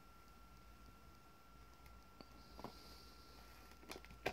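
Near silence: room tone with a faint steady high whine and a few faint ticks about two seconds in.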